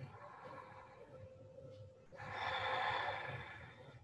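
A long, audible exhale of breath that swells and fades over under two seconds, starting about two seconds in, with softer breathing before it.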